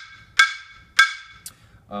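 Car brake drum played as a percussion instrument and struck with a mallet: two bright, ringing metallic hits about half a second apart, then a fainter tap. It gives the anvil-like clang that it is used to replicate.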